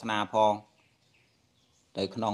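A man's voice preaching in Khmer: a few syllables, then a pause of more than a second before he starts speaking again at the end.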